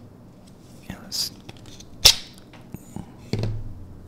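A fixed-blade knife being drawn from its very rigid sheath, the sheath letting go with one sharp click about halfway through, followed by a few lighter clicks and a soft thump.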